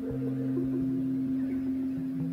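Frosted quartz crystal singing bowl ringing: one steady low tone with higher overtones, slowly fading.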